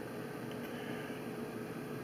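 Steady, quiet room noise: an even hiss with a faint steady hum, and no clear handling sounds.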